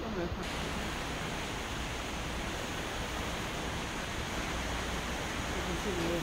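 Steady rushing hiss of wind and water heard from the open balcony of a cruise ship under way, with faint voices at the start and again near the end.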